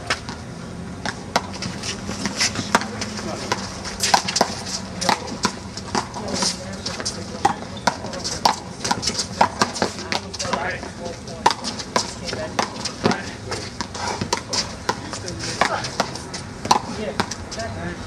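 Rally on a one-wall handball court: a rubber ball smacked by players and off the wall, giving many sharp, irregular cracks, with sneakers scuffing on the court between them.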